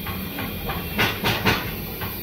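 Steady background hum and hiss of industrial machinery, with three short noise bursts about a second in.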